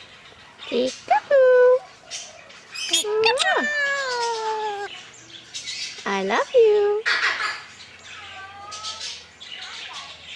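Male red-sided eclectus parrot giving a series of squawks and vocal calls that bend in pitch. The longest, about three seconds in, falls slowly.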